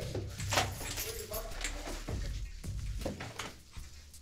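A series of short knocks and bumps from officers moving about and handling a door, with the body-worn camera jostled, and faint voices underneath.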